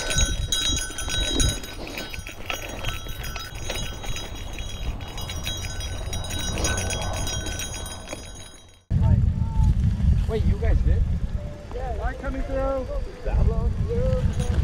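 Gravel bike rattling and clattering over a lumpy, rutted dirt singletrack, with many quick knocks from the wheels and frame. About nine seconds in the sound cuts to a heavy wind rush on the microphone during a descent, with faint distant voices.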